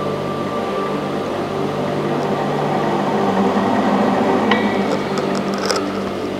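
Allison 250 C18 turboshaft's axial compressor rotor being spun round in its opened case: a steady mechanical whir over a low hum, growing a little louder, with a single click about four and a half seconds in.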